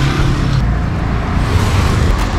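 Street traffic: a motor vehicle's engine running close by, a low rumble whose higher noise eases off about half a second in.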